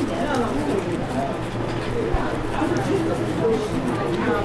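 Indistinct voices talking, with no distinct sound from the work at hand standing out.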